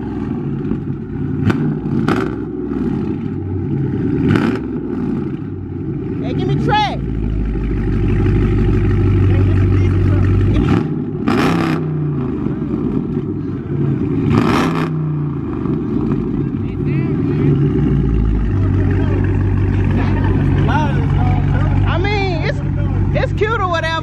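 Dodge Charger's V8 exhaust, revved repeatedly at a standstill, with long held revs and drops back toward idle between them.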